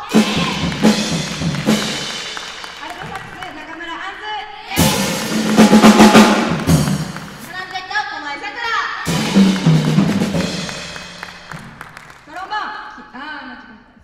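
Drum kit played in three short loud bursts about four to five seconds apart, each ending on a cymbal crash that rings and fades away.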